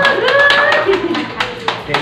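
A few people clapping, the claps sparse and uneven, with a voice calling out over them.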